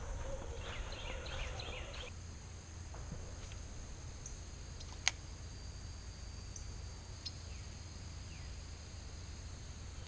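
Quiet outdoor ambience: a steady high-pitched insect drone over a low rumble, with a few faint chirps and one sharp click about five seconds in.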